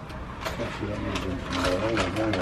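Faint voices talking over a low, steady rumble.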